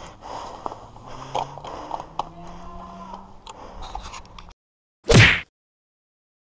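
Trek Session 9.9 downhill mountain bike rolling down a dirt track, with a run of rattles and sharp clicks from the bike over the rough ground. It cuts off about four and a half seconds in, and near the end comes one short, loud burst of sound.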